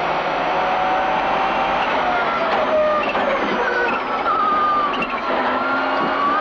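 Subaru Impreza WRC's turbocharged flat-four rally engine heard from inside the cabin. It runs under load with its pitch slowly rising for the first two seconds, drops back about halfway as the car slows, and climbs again near the end.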